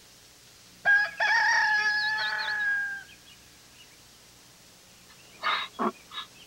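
A rooster crowing once: a single long call of about two seconds, starting about a second in. Near the end come a few short, breathy bursts.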